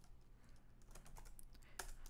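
Faint, scattered clicks of a computer keyboard: a handful of keystrokes typing a short search term.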